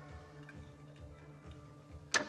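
Faint suspense film score: a low pulsing hum with soft ticks about every half second.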